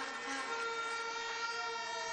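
Several horns sounding long, steady, overlapping notes over crowd noise, blown in response to the candidacy announcement.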